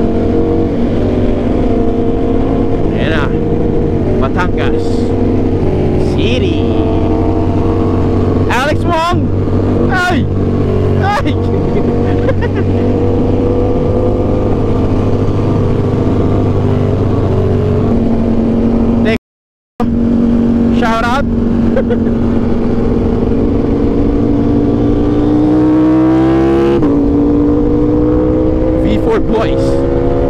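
Aprilia RS660's 659 cc parallel-twin engine running at steady cruising speed, heard from the rider's seat with wind rush. Near the end the revs climb under acceleration, drop at an upshift, and climb again.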